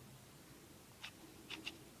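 Faint short clicks and scratches of a fingertip tapping and rubbing into an eyeshadow pan in a plastic palette, three small ticks about a second and a half in, over near-silent room tone.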